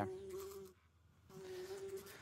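Steady buzzing tone from audio playback, heard dry without reverb. It drops out for about half a second in the middle, then comes back.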